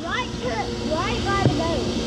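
A steady low mechanical hum runs under brief, faint voice sounds, with a single small click about one and a half seconds in.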